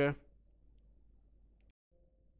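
Two faint, short computer mouse clicks over low background hiss, the first about half a second in and the second near the end, followed by a brief dropout to total silence.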